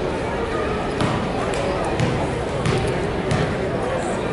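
A basketball bouncing a few times on the hardwood gym floor as the shooter sets up a free throw, over the murmur of crowd voices.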